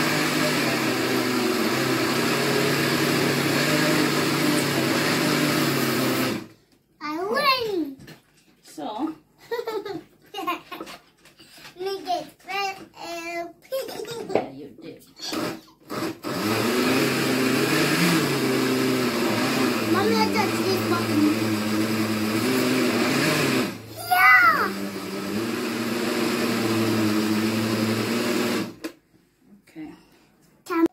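Oster countertop blender grinding raw chicken breast chunks into a paste, run in bursts: it runs for about six seconds, stops, then runs for about eight seconds and, after a short break, about four more, its pitch stepping up and down as it works.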